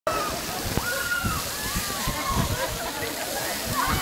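Many fountain jets spraying water down onto a path in a steady hiss and patter, with people shrieking and yelling as they run through the spray.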